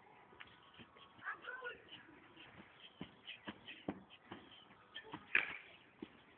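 Faint shuffling and scattered light clicks as a golf club is set up and swung on a lawn, with a short, louder sound just over five seconds in.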